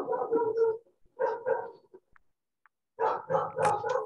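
A dog barking in three bouts of rapid barks, with a gap of about a second before the last bout.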